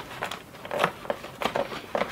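Cardboard box being opened by hand: irregular small clicks, scrapes and crinkles as the flap is worked loose.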